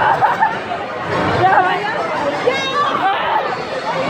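Several people chattering and laughing together over each other, with a faint crowd babble behind.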